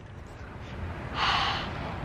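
A person's short breathy exhale or gasp close to the microphone, about a second in, over a low rumble.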